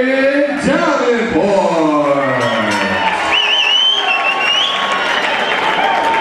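Boxing ring announcer drawing out a fighter's name in one long call whose pitch slides down over about three seconds, followed by a crowd cheering with a wavering whistle.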